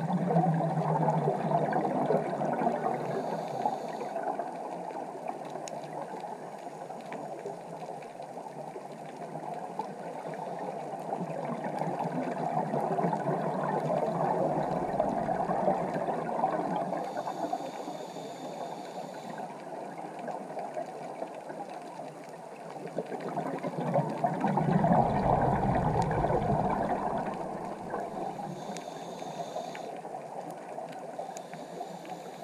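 Scuba breathing heard underwater: long rushes of exhaled bubbles gurgling out of a regulator, coming about every twelve seconds, each followed by a brief hiss of the regulator on the inhale.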